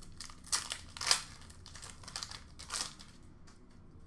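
Hockey card pack wrapper crinkling in the hands as a pack is opened: several short rustles, the loudest about a second in.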